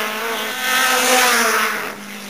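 Race car engines revving hard under acceleration, their pitch climbing and then dropping. The sound is loudest about a second in and falls away near the end.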